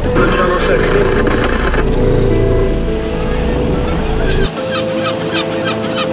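Boat engine and creel hauler running while a creel comes up out of the sea, with water splashing off it early on. About halfway through the low rumble drops away and bird calls are heard, all under steady background music.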